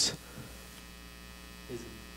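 Steady low electrical mains hum with faint hiss, heard between spoken phrases; a brief faint vocal sound comes near the end.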